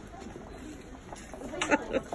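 Faint, wavering voice-like sounds over a quiet background, a little stronger in the second half, in a short gap in the backing music.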